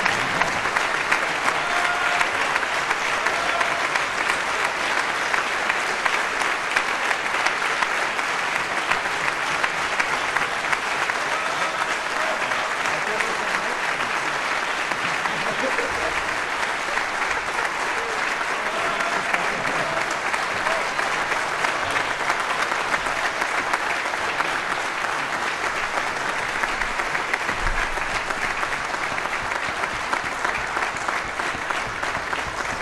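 Concert audience applauding steadily, a dense, unbroken clatter of many hands clapping.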